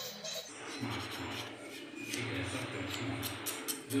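Background music cuts off about half a second in. A hand nail file and buffer then rasp against acrylic nail extensions in short strokes, with quick scratchy strokes near the end.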